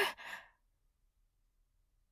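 A woman's voice breaking off into a soft, short breath that fades within about half a second, followed by near silence with only faint room tone.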